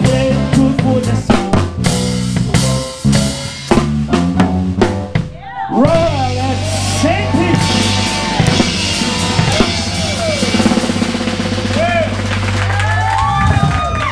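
Live band of drum kit, electric bass, organ, electric guitar and alto saxophone playing the ending of a tune. Rapid drum strikes lead, over the band, into a short break about five seconds in, followed by a long held final chord with sliding notes over it that cuts off just before the end.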